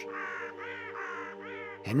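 A bird calling four times in short, arching calls, over a low steady music drone.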